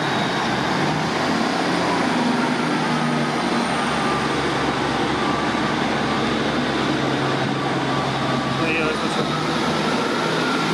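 Northern Class 150 Sprinter diesel multiple unit accelerating away from the platform and passing close by, its diesel engines running steadily under power.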